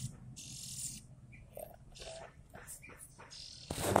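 Jongkangan chick in a cage giving hissy, rasping begging calls while being hand-fed from a stick: a long one in the first second, then a few shorter ones.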